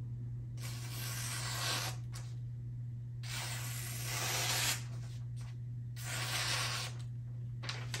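Knife blade slicing through a sheet of paper in three long strokes, each a soft hiss about a second long, over a steady low hum. It is a paper-cutting test of a freshly sharpened edge, reprofiled to 20 degrees per side and brought nearly to a mirror polish.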